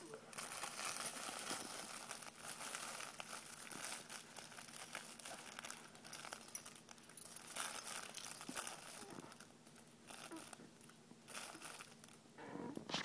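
Crinkly fabric of a hanging plush baby toy being grabbed and squeezed by an infant's hands, rustling and crinkling in irregular spells with brief pauses.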